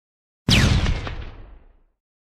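Logo-intro sound effect: a single sudden blast-like boom about half a second in, with a whine falling in pitch over it, dying away over about a second and a half.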